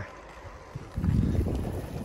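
Wind buffeting the microphone of a camera riding along on a moving bicycle, a rough low rumble that comes up suddenly about a second in.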